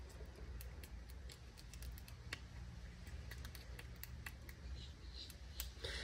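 Faint small clicks and scrapes of a stir stick against a plastic mixing cup as glitter epoxy is scraped out into a silicone mold, over a low steady hum.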